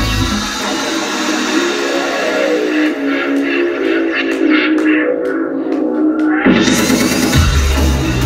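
Live electronic rock (breakbeat/industrial) music with electric guitar and synthesizer. The bass and drums drop out about a second in, leaving steady synth notes while the high end closes down. The full band with heavy bass comes back in near the end.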